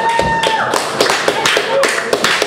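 Scattered hand claps and sharp taps, after a single held high tone stops about a third of the way in; voices murmur underneath.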